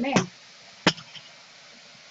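A single sharp click about a second in, followed by a couple of faint ticks, over a low steady hiss.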